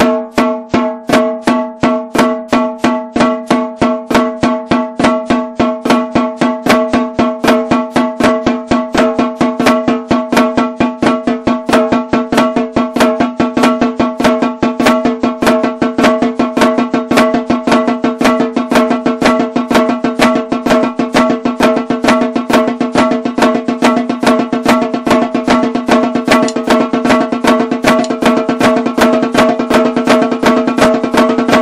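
Snare drum played with sticks in the flam accent rudiment: repeating groups of strokes with accented flams, getting steadily faster. Each stroke rings with a clear pitch.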